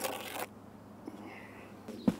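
A steel mason's trowel scraping across mortar on top of a brick course, one short scrape at the start.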